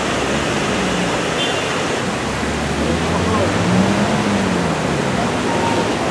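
Steady street noise, a wash of traffic and air, with faint voices talking underneath.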